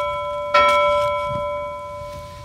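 A clear bell-like chime with several ringing tones, struck again about half a second in and then fading slowly.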